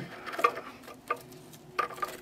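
Fingers pressing and shifting sand and small rocks inside a glass ant arena, making a few soft clicks and scrapes.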